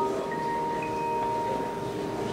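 Piano notes held and ringing out. One high note sustains through the whole stretch and slowly fades over lower notes that die away early, with a couple of faint higher notes sounding briefly.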